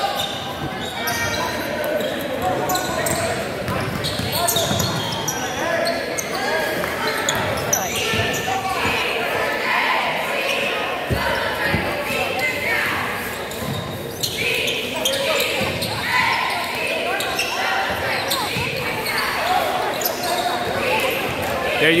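Basketball game sounds in an echoing gymnasium: a basketball bouncing on the hardwood court, mixed with indistinct voices of players and spectators.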